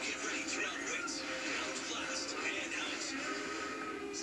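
A television playing in the background: voices over music, with a thin sound lacking bass.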